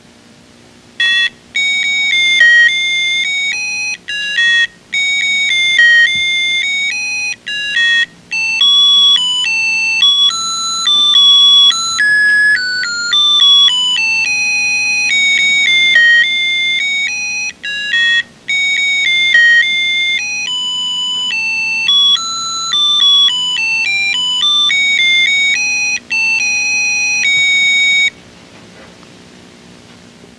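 A simple electronic tune of plain beeping notes, like a ringtone, playing as outro music. It starts about a second in, has a few brief gaps, and stops about two seconds before the end.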